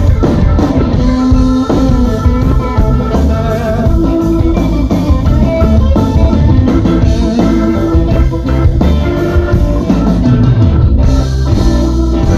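Live blues-rock band playing loudly: electric guitar lead with held notes over a drum kit, heard from among the audience.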